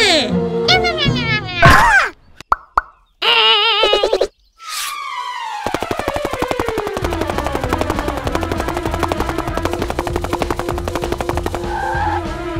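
Cartoon sound effects: short squeaky sliding tones and a few sharp clicks, then a long falling whistle that settles into a steady low hum under rapid, even ticking.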